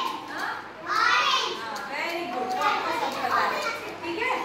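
A group of young children's voices talking and calling out, several at once.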